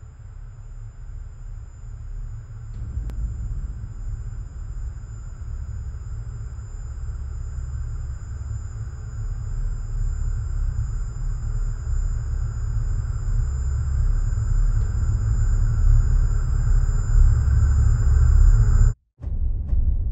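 A deep cinematic rumbling drone that swells steadily louder, with a thin high-pitched ringing tone held above it. It cuts off abruptly about a second before the end.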